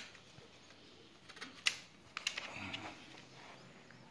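Handling sounds of a Lenovo ThinkPad T430 laptop being turned over and opened: a few light clicks and knocks, the sharpest about one and a half seconds in, followed by a short scraping rustle.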